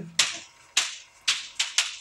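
A hand swiping repeatedly at the rim of a wheel to spin it up, giving a run of sharp slapping strokes, about five in two seconds, each closer to the last.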